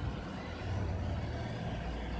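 A steady low rumble with a faint hiss over it, with no clear strokes or squeaks standing out.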